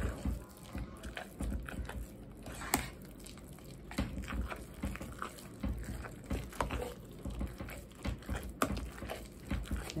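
Wire potato masher pushed repeatedly through soft, creamy mashed potatoes in a stainless steel pot: irregular wet squelches and low thuds, with a few sharp clicks of the metal masher against the pot, the sharpest about three seconds in and near the end.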